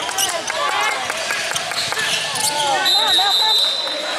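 Basketball game on a hardwood gym floor: the ball bouncing and players' feet and voices calling out, with a steady high tone lasting about a second near the end.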